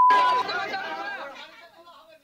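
A steady, high, single-pitched beep, of the kind laid over a word to censor it, cuts off a fraction of a second in. Then a crowd of people talk over one another, fading out toward the end.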